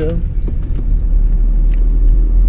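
Steady low rumble of a car's engine and tyres heard from inside the cabin while driving along a town street.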